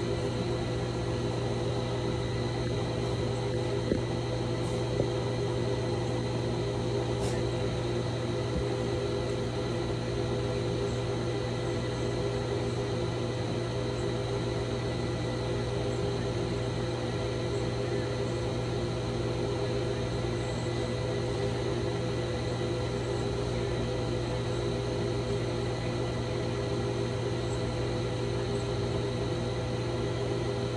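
Steady hum of an appliance running, with several constant tones held unchanged throughout, and a couple of small ticks about four and five seconds in.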